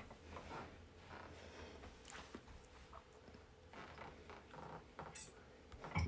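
Quiet room with faint scattered rustles and small clicks, the sharpest about five seconds in.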